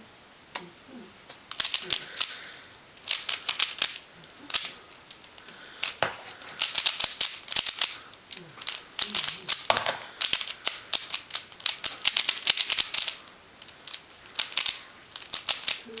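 QiYi Thunderclap v1 3x3 speedcube being turned fast one-handed: rapid bursts of clicking plastic layer turns, starting about a second and a half in, with brief pauses between bursts.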